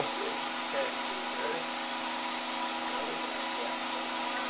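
Steady electrical hum of running laboratory equipment, several fixed tones held level throughout.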